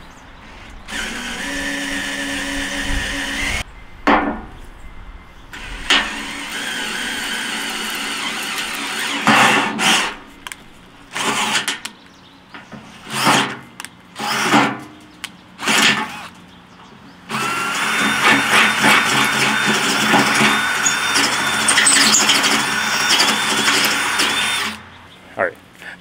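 Cordless drill boring an oiled 3/8-inch bit into the steel of a tractor loader bucket, run in several short bursts with pauses and then one long steady run near the end, with a high whine from the bit cutting the metal.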